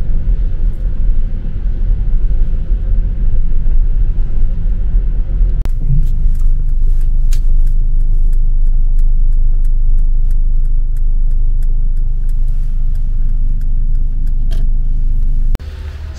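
Car cabin rumble while driving on wet roads, loud and steady. From about six seconds in, a run of light sharp ticks comes roughly three a second.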